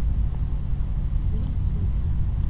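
Steady low background rumble, with a faint voice briefly near the end.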